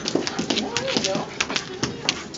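Puppies at play on a hard tiled floor: a quick run of sharp clicks and taps, with people's voices in the room behind them.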